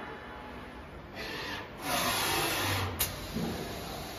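Tube laser cutting machine working as its front chuck travels: two stretches of hissing mechanical noise, the second louder, ending in a sharp click about three seconds in.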